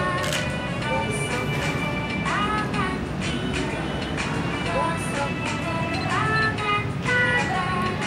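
A children's hand-washing song playing: a sung melody over a steady instrumental backing track.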